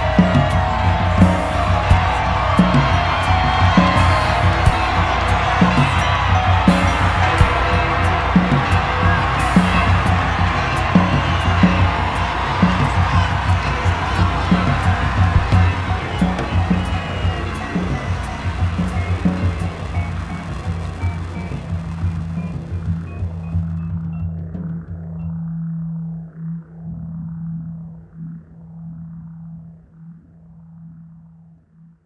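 Live art-rock band playing: vibraphone, keyboards, bass and drums, with a steady beat of drum hits. After the middle the music thins and fades, until only a low sustained drone with a slow pulse remains near the end.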